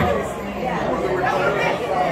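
Indistinct talk and chatter from several people, with no clear sound other than voices.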